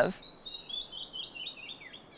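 A songbird singing a rapid series of short, clear, downslurred notes, about six a second, the series slowly falling in pitch.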